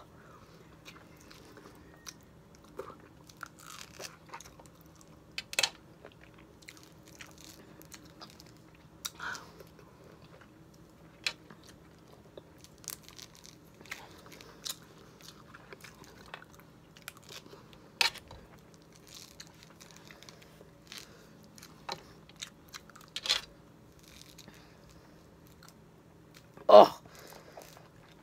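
A person biting and chewing raw lemon and lime wedges coated in salt and hot sauce: quiet mouth sounds broken by many short sharp clicks and smacks, a few louder ones every several seconds.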